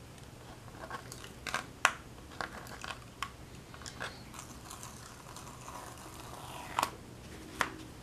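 Fingertips rubbing and peeling dried masking fluid off watercolour paper: faint scratchy rubbing with scattered short, sharp crackles of the paper, two of them close together near the end.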